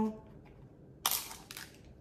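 A lens cap pulled off a Sony ZV-E10's 16–50 mm kit lens: one short snap about a second in, then a few faint handling clicks.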